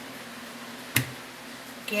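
A single sharp click about a second in, from hands and knife working pork belly at the counter, over a faint steady hum.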